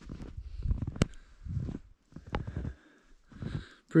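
Footsteps crunching in deep fresh snow with rustling handling noise, coming in uneven bursts, and a sharp click about a second in and another a little past two seconds.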